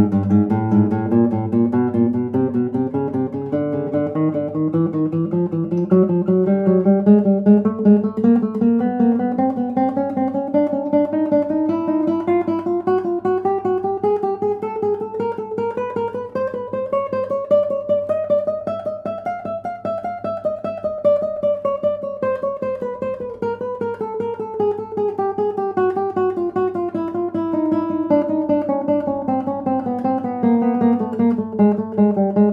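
Nylon-string classical guitar playing a chromatic scale in groups of three with an upper auxiliary: each note is approached from the semitone above, dips below, then returns. The quick notes climb steadily in pitch until about two-thirds of the way through, then descend.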